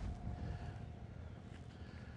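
Faint outdoor background noise with a low, steady rumble of wind on the microphone.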